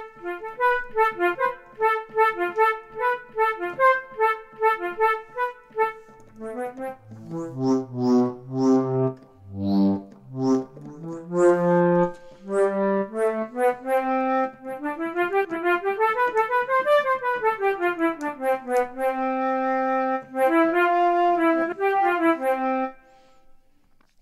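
GarageBand for iPad's sampled flute instrument played from the on-screen keyboard. It plays quick repeated notes, then some lower notes, then a scale that rises and falls, and ends on held notes about a second before the end.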